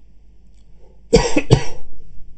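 A person coughing twice in quick succession, a little over a second in.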